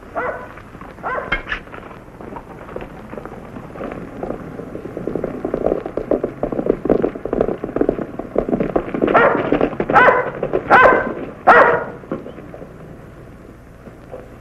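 Horses galloping closer on dirt, the hoofbeats growing louder through the middle, while a dog barks: a few barks at the start and three loud barks near the end.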